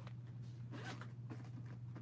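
Faint scratchy rustling of things being handled, with a few small clicks, over a steady low hum.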